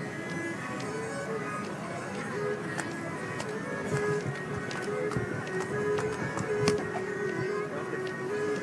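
Several Hardanger fiddles playing a Norwegian folk dance tune together, a steady melody of held and moving notes.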